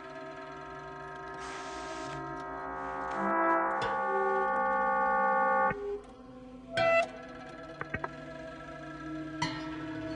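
Free-improvised ensemble music: layered sustained horn-like tones swell slowly and cut off suddenly a little past halfway. A sharp loud hit follows, then a few soft clicks, and quieter held tones return near the end.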